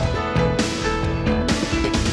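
Opening theme music for a TV series, with guitar among the instruments.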